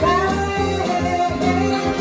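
Live pop-soul band music: electric guitar over a steady, repeating bass line, with a held high note that slides down just after the start.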